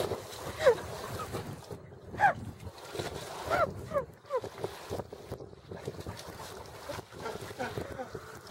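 Dog swimming, paddling through shallow sea water, with wind on the microphone. A few short pitched calls that rise and fall come through in the first half.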